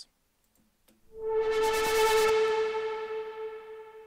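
A synth riser effect plays. After about a second of silence, one held synth note swells in with a fluttering hiss, peaks about two seconds in, then fades away through a long reverb tail as the hiss dulls.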